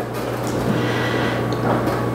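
Steady low hum with an even hiss over it: the room's background noise, with no other sound standing out.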